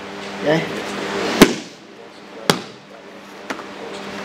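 Three sharp slaps of wrestlers' bodies and limbs hitting the mat as they scramble: the loudest about a second and a half in, then two weaker ones about a second apart.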